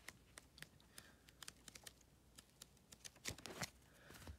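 Pages of a worn paperback comic book being flicked through under a thumb: faint quick paper ticks and flutters, with a few louder handling sounds near the end.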